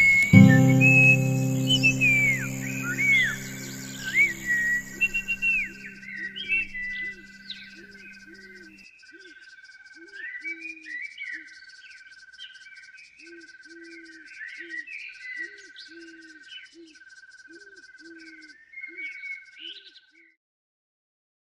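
The song's last acoustic-guitar chord rings out and stops abruptly about nine seconds in, while a meadow ambience of bird chirps, a pulsing insect trill and a fast high ticking like crickets runs on. Short low calls repeat about twice a second underneath.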